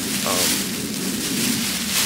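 Grabber mylar space blanket crinkling and rustling as it is handled and lifted, a dense crackly hiss that swells about half a second in and again near the end.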